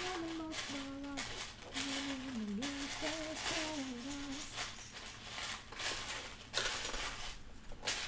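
A man humming a tune in long, gliding notes for about four seconds. Loose plastic LEGO bricks rattle and clatter as pieces are sorted in a tub.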